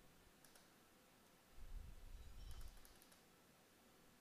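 Near silence with a few faint clicks of a computer mouse, and a faint low rumble in the middle.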